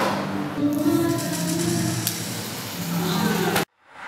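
A noisy mix of indistinct voices and background music with sustained low notes, which cuts off abruptly shortly before the end.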